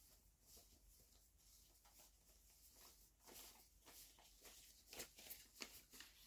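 Near silence: room tone, with a few faint clicks and rustles in the second half.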